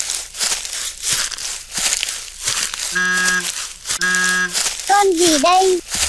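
Edited sound effects: a dense crackling, rustling noise, then two short steady tones about a second apart, then a wavering pitched sound that slides down and back up twice near the end.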